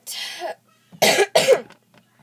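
A girl coughing twice, about a second in and half a second apart, after a short breathy rasp at the start.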